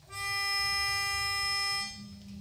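Pitch pipe sounding one steady reed note for just under two seconds, cutting off abruptly: the starting pitch given to an a cappella choir before it sings.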